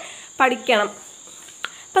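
A brief spoken word or two, then a pause with a steady high-pitched whine in the background and a single short click near the end, as the handwritten paper note is moved aside.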